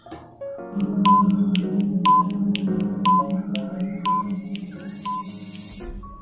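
Countdown-timer sound effect over background music: fast clock-like ticking with a short beep once a second, five beeps in all, marking a five-second countdown.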